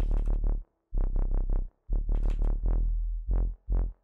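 Synth bass from FL Studio's FLEX synthesizer, playing a Bass Utopia preset: a run of short bass notes with the lowest end strongest, broken by two brief pauses.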